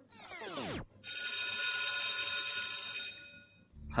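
A quick falling sweep, then a phone ringing steadily for about two seconds before it stops and the call is answered.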